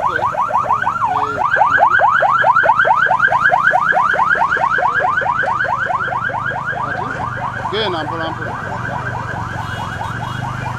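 Electronic siren in a fast yelp: quick rising sweeps, about five a second, loudest two to four seconds in and easing slightly after.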